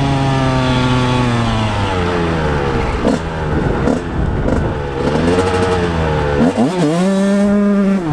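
A Honda CR125R's two-stroke single-cylinder engine under way: the revs fall off for the first two or three seconds, the engine runs unevenly and low for a couple of seconds, then the revs climb again, with a sudden brief drop and climb back near the end.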